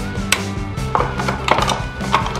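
Scissors snipping through clear PET bottle plastic: several short, sharp cuts, the strongest about a third of a second in and a quick run of them past the middle.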